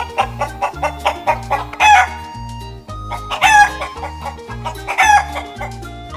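Rooster crowing: three short, loud calls about a second and a half apart, over background music with a steady bass beat.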